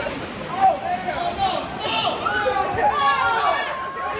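Several people laughing and exclaiming excitedly, with voices overlapping.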